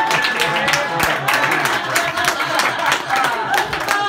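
Theatre audience laughing and applauding, with dense hand clapping and scattered whoops and cheers.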